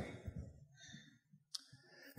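A quiet pause in a room, broken by one sharp click about one and a half seconds in.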